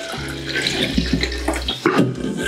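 Cold brew coffee poured in a steady stream from a stainless steel jug into a glass jar, splashing into the liquid already inside.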